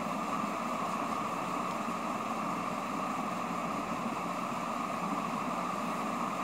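Steady background hum and hiss with no distinct events; it does not change.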